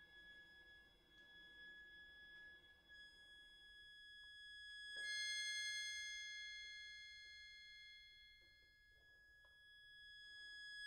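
Very soft chamber music for bayan, violin and cello: long, steady high notes, with a brighter second high note entering about halfway through, swelling and then fading.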